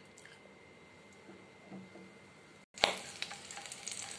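Green chillies frying in hot oil in a kadhai: a couple of seconds of only faint, quiet frying, then, after a sudden click, a steady sizzle near the end.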